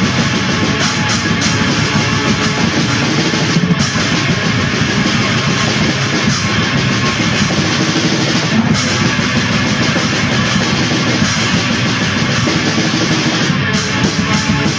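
Black metal: distorted guitar and drum kit playing a dense, loud wall of sound.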